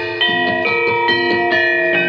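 Javanese gamelan playing: bronze metallophones and kettle gongs strike a quick run of ringing notes, several a second, with the notes overlapping as they sustain.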